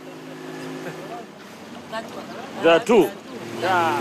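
Motorboat engine running at a steady pitch, with a person's voice breaking in briefly about three seconds in.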